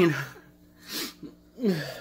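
A man's wordless vocal sounds: his voice trails off falling at the start, a short breathy burst comes about a second in, and a brief falling voiced sound follows near the end.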